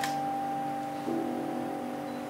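Slow, quiet piano music: held chords ringing and slowly fading, with a new chord entering about a second in. A brief click sounds right at the start.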